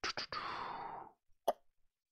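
A person's soft breath in a pause between spoken phrases, with a couple of small mouth clicks at the start, then a single sharp click about one and a half seconds in.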